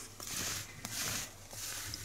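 Rustling of a crocheted yarn scarf being handled and shifted across a wooden tabletop, in several soft swishes with a light tap about a second in.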